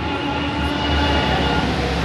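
Low, steady rumble of handling noise from the phone's microphone pressed against clothing, muffling a held organ chord that is faintly heard underneath.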